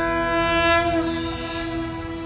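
Broadcast transition sting: a sustained, horn-like chord of several steady tones that swells in and slowly fades, with a falling high swish over it in the second half.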